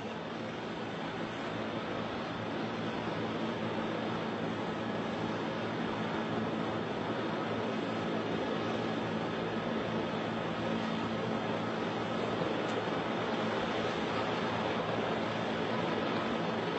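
Steady rushing engine-and-rotor noise of a news helicopter with a low hum under it, heard through an open microphone. It grows a little louder over the first few seconds, then holds.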